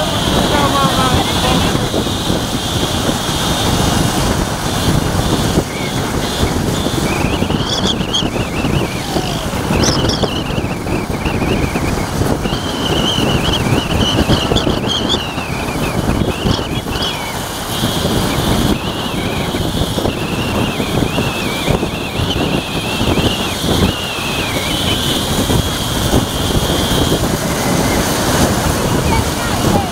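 Motorcycles and a car running along a road in a slow convoy: a dense steady engine and road noise. From about seven seconds in, high wavering tones sound over it.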